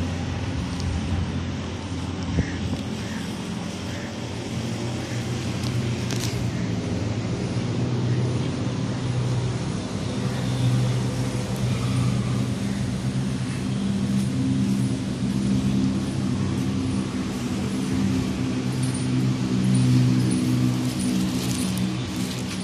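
A low, steady engine hum that swells and fades a little, with a few brief clicks.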